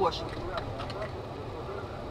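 Steady low rumble of a car's engine and cabin noise, with a woman's voice saying a brief word at the start.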